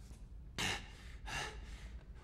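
A man's two sharp, hard breaths, gasps about three quarters of a second apart, the first louder: the breathing of a man in distress.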